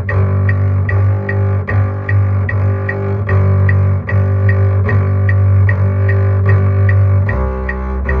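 Double bass played with the bow: low, sustained notes in an orchestral excerpt, stepping down to a lower note near the end. A steady high click keeps time about two and a half times a second.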